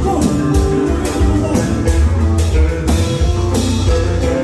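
Live konpa band playing: electric guitar and drum kit over a heavy bass line, with a cymbal beat about twice a second.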